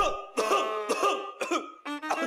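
A person coughing and clearing their throat several times in short, separate bursts.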